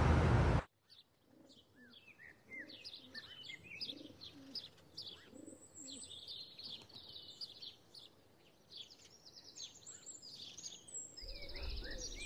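Background music cuts off abruptly just after the start. Then comes faint birdsong: small birds chirping in quick short notes, with a dove cooing softly underneath.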